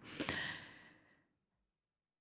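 A short, soft breath from a woman pausing between sentences, fading out within the first second, followed by dead silence.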